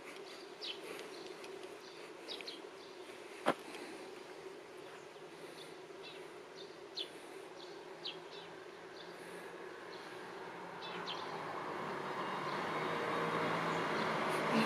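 Outdoor summer ambience of buzzing insects, a steady hum with short high chirps scattered through it. A single sharp click comes about three and a half seconds in. A rushing noise builds steadily over the last few seconds.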